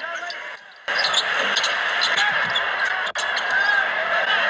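Courtside basketball game sound: arena crowd noise with sneakers squeaking on the hardwood and a ball bouncing, growing louder about a second in.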